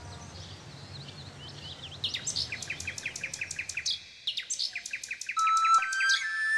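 Bird song for the cartoon nightingale: rapid, repeated chirps, each note sweeping down in pitch, in two quick runs from about two seconds in. A low hum underlies the first part and stops at about four seconds, and a held flute note comes in near the end.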